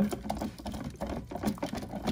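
A 1:64 scale die-cast monster truck toy being moved around under water in a plastic cup: irregular light clicks and knocks of the truck against the cup, with water swishing.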